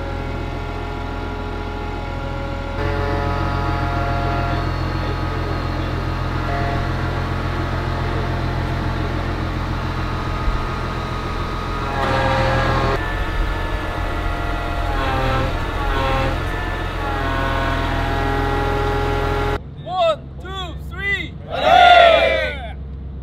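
Steady drone of a large military vehicle engine running, with faint voices over it. Near the end the engine noise cuts off and a group of voices shouts together several times, the last shout the loudest.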